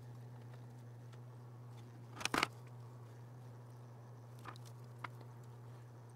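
Steady low hum of the plating bath's small circulation pump, with a quick pair of light metallic clicks about two seconds in as wire-hung washers are hooked over the copper bus bar, and two fainter ticks near the end.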